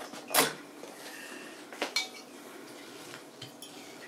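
Hard clicks and clatter from handling an electric wine opener's base and its parts at a wine bottle. There is one loud click about half a second in and two more just before the two-second mark, with faint squeaks between them. No motor is running.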